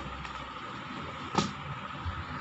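Steady background noise with a faint hum, picked up by a video-call microphone, with one sharp click about one and a half seconds in.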